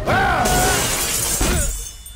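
A sudden, loud shattering crash, as of glass and metal breaking in a film fight sound effect, dying away over about a second and a half.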